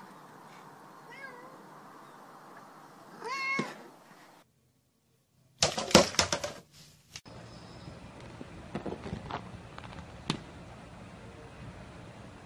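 A domestic cat meowing: a faint call about a second in, then one clear, louder meow about three seconds in. After a short silence there is a loud burst of knocks and clatter, and then a few scattered taps.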